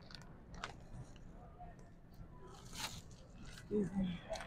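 Quiet shop-aisle background with scattered soft rustles and taps, one a little louder near three seconds in, and a short hummed "mm" near the end.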